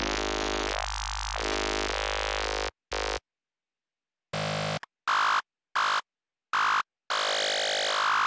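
Serum software synthesizer playing an FM lead alone: a held buzzy note, then a run of short staccato notes with dead silence between them, and a longer note near the end. The oscillator's wavetable is being switched between FM wavetables, so the tone changes from note to note.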